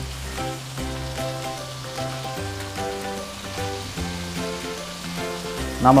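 Chicken pieces sizzling on a hot iron tawa while a spoon moves them, under background music of held notes over a bass line that change about once a second.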